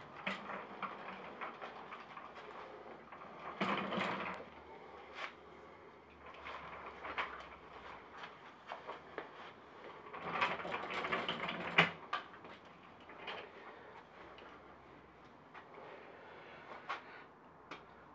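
Scattered metal clicks, knocks and rattles from a stripped Suzuki Bandit 1200 frame being handled and swung round on a rotating motorcycle lift stand. There are two longer spells of clatter, one about four seconds in and one around ten to twelve seconds in.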